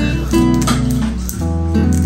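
Background music led by a plucked acoustic guitar, with a bass line changing about one and a half seconds in.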